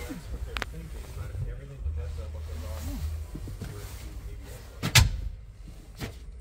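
A person shifting and settling into a van's driver seat, with low rustling and handling noise, then a single sharp knock about five seconds in, the loudest sound.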